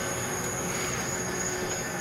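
Steady background noise at night, with a thin, constant high-pitched drone from insects and no distinct event.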